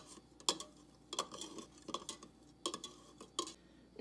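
A spoon stirring egg dye (water, food colouring and white vinegar) in a cup, clicking lightly against the cup's side in irregular taps.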